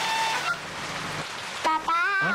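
Loud rain-like hiss with a car horn sounding steadily for about the first half second, after which the hiss drops lower. Near the end a high, wavering pitched note begins.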